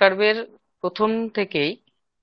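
Speech only: a voice lecturing in Bengali over an online video call.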